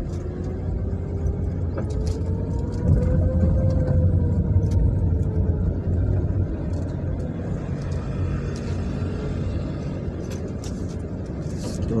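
Car engine and road noise heard from inside the cabin while driving: a steady low rumble, with a faint whine that rises and then falls in pitch over the first six seconds.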